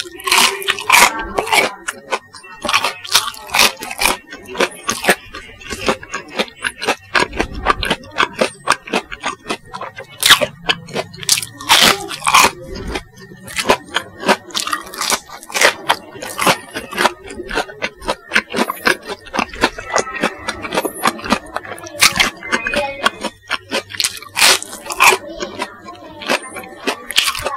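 Close-miked crunching of Kanzler chicken nuggets with a crispy bubble-crumb coating as they are bitten and chewed: a dense, irregular run of sharp crunches with wet mouth sounds between them.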